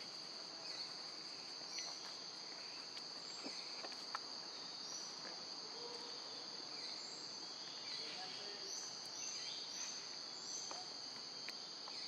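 Steady, high-pitched drone of a forest insect chorus, with short chirps recurring over it and a few faint clicks.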